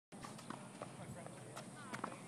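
Faint footsteps on a hard tennis court, a series of light taps a few tenths of a second apart.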